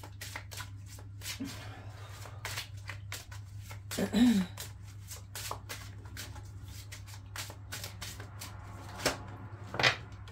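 A deck of tarot cards being shuffled by hand: a run of quick, papery clicks and riffles over a steady low hum, with a louder snap of the cards just before the end. A short murmured voice is heard about four seconds in.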